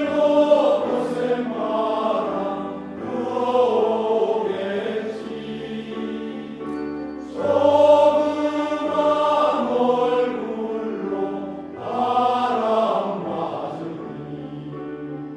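Male choir singing in several-part harmony, held chords in long phrases that swell and fall back about every four seconds, the loudest just before the middle and softer near the end.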